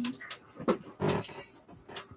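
A person making short, breathy, panting-like vocal huffs, about four in two seconds.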